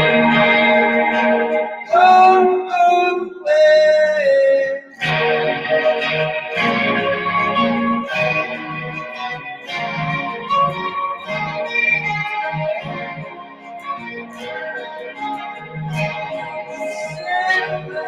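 Indie psychedelic-rock band playing live: electric guitars over keyboard, with a steady low bass line. Held lead notes ring out about two and four seconds in.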